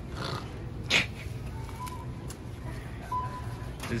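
Supermarket checkout barcode scanner giving a few short, high, steady beeps as the cashier scans groceries. A short, sharp noisy burst comes about a second in.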